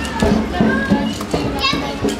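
Children's voices, chattering and calling out, over music with a steady beat.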